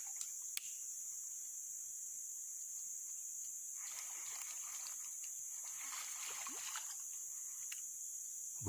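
Steady high-pitched drone of forest insects, with a single sharp click about half a second in and a faint soft hiss between about four and six seconds.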